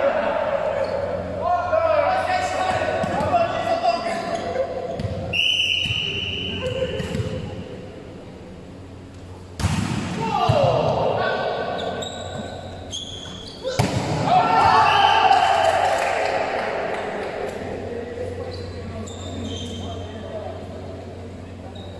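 Players' voices and calls during an indoor volleyball game, echoing in a large hall, with two sharp ball strikes about ten and fourteen seconds in, each followed by a shout.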